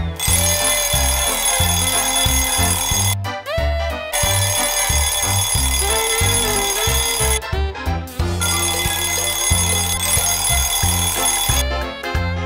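Upbeat theme jingle with an alarm-clock bell ringing over it in three bursts of about three seconds each, with short breaks between them.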